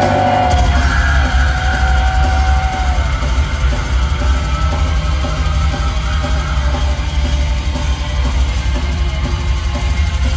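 Extreme metal band playing live at full volume, heard from the crowd: drums, distorted guitars and bass. A heavy low end of drums and bass comes in about half a second in, under held high melody notes that fade out after a few seconds.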